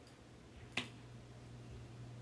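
A single sharp click of a computer mouse button a little under a second in, over a faint low steady hum.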